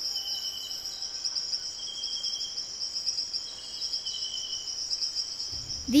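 Rainforest insect chorus: a steady, high-pitched chirring with a fast pulse in it, and a lower call that comes and goes every second or two.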